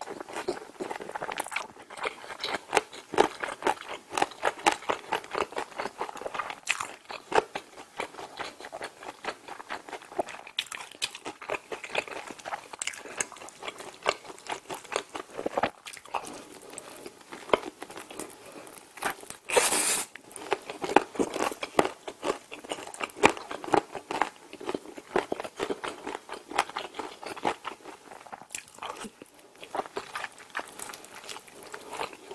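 Close-up biting and chewing of a crispy fried chicken drumstick coated in spicy sauce: dense, irregular crunches with wet chewing between them, and one especially loud crunch about two-thirds of the way through.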